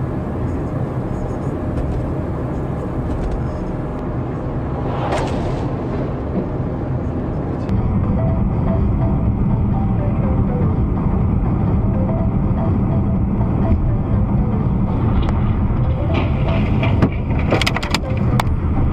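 Steady road and engine noise of a moving car, recorded from inside it. The noise grows louder about eight seconds in, with a brief whoosh about five seconds in and a few sharp clicks near the end.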